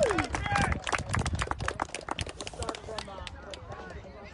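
A small group clapping hands, a quick irregular patter of sharp claps that thins out and fades over the last second or two, with voices mixed in.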